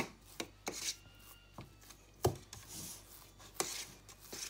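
Bottom of a glass tamping crushed biscuit crumbs into a cake tin. Irregular sharp taps with gritty scraping between them, the loudest taps at the start and a little past two seconds in.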